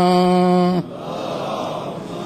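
A man's voice chanting Quranic recitation, holding a long final note on one level pitch that breaks off just under a second in. After it comes a steady, noisy murmur of many voices from the congregation.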